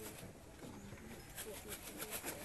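Faint background voices with a few short light clicks in the second half.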